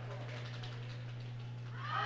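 Faint gymnasium ambience under a steady low hum, with no clear ball bounce or rim hit.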